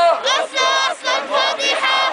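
A boy chanting protest slogans in a high, shouted voice, short syllables in a steady rhythm, with a crowd of protesters chanting behind him.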